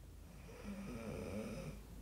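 Faint breathing, starting about half a second in.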